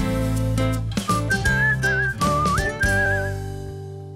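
Short upbeat TV title jingle: bouncy music with a whistled melody that comes in about a second in and wavers up and down, then the music rings out and fades away near the end.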